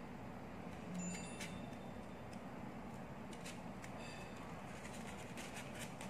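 Scissors cutting through folded paper: a few faint, irregularly spaced snips.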